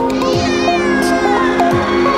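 A kitten gives one long meow that falls in pitch over about a second and a half, over background music.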